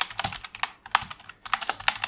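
Typing on a computer keyboard: a quick, uneven run of key clicks with a short pause a little after halfway.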